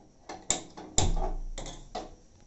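A handheld gas-stove spark lighter and the stove knob clicking several times, two clicks louder than the rest. The burner catches at about the second loud click, followed by a low rumble of gas flame that fades over most of a second.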